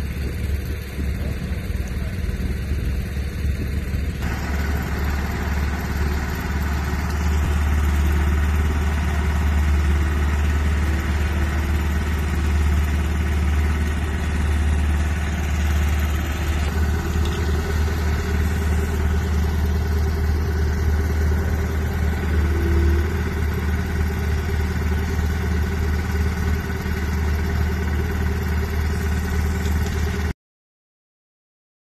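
Vermeer D10x15 horizontal directional drill's diesel engine running steadily, louder and fuller from about four seconds in.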